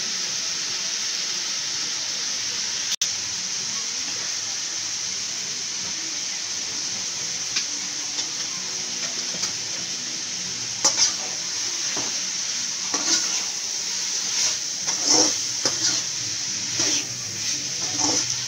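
Grated carrot and prawns sizzling steadily in oil in a steel pan, with a brief dropout about three seconds in. From a little past halfway, a spatula scrapes and stirs through the mix in short irregular strokes.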